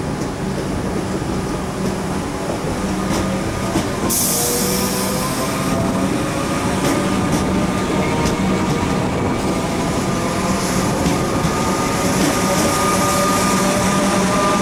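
Comeng electric multiple unit running past along the platform, its motor whine slowly rising in pitch as it gathers speed, with scattered clicks from the wheels on the rails. A burst of hiss comes about four seconds in and lasts under two seconds.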